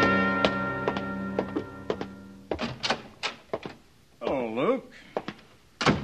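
Radio-drama sound effects: the held chord of a brass music bridge dies away, while a run of uneven hollow wooden thunks sounds through it. A short spoken word comes about four seconds in, and there is one more sharp knock near the end.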